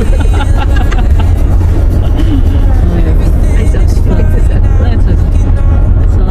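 Steady low road and engine rumble inside a moving car's cabin, with music and some voices over it.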